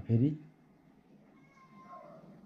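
A man's voice says one short word at the start, followed by quiet room tone; a faint thin tone sounds briefly near the end.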